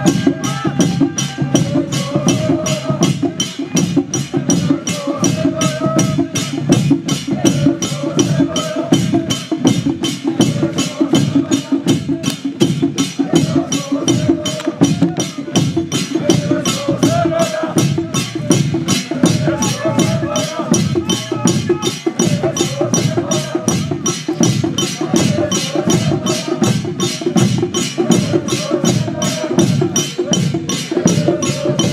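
A group of people singing a hymn together while walking, over a steady percussion beat struck about three times a second.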